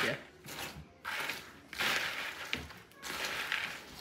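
Spoon stirring chocolate-coated cereal in a mixing bowl: about three spells of crunchy rustling and scraping.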